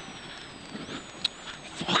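Rally car driving on a gravel stage, its engine and road noise heard faintly and steadily from inside the cabin. There is a single short knock about a second and a quarter in.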